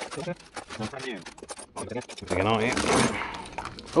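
Loose bolts, washers and other small metal parts clinking and scraping as gloved hands rummage through a metal tool-chest drawer, in many short clicks. A man's voice mutters without clear words around the middle.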